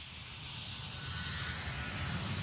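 Jet airliner sound, engines running up and growing steadily louder as at takeoff, with a thin high whine over a low rumble.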